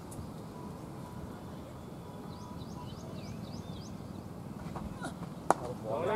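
A cricket bat striking the ball once: a single sharp crack about five and a half seconds in, over quiet outdoor background.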